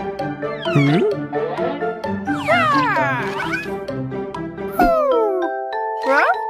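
Cartoon background music with high, animal-like vocal cries that rise and fall in pitch over it, twice. About five seconds in, the music changes and a falling slide sound comes in.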